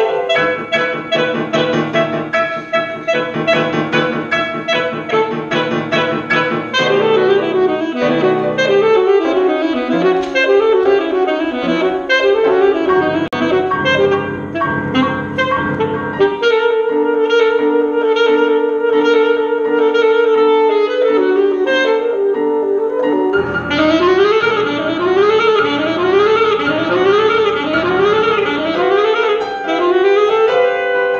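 Alto saxophone and grand piano playing contemporary chamber music: fast, dense figures, then a long held note a little past halfway, then repeated rising runs about once a second near the end.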